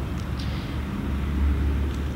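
A low, steady rumble, a little stronger past the middle.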